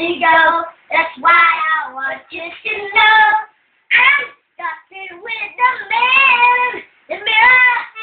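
Young children singing without accompaniment, in short phrases separated by brief pauses.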